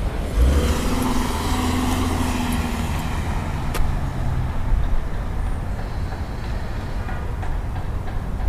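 An SUV driving past close by through an intersection: engine hum and tyre noise swell, then fade away over about four seconds, the pitch dropping slightly as it goes by. A single sharp click near the middle.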